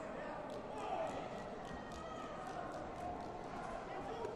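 Sports-hall ambience: a murmur of many voices with a quick run of sharp slaps, about four a second.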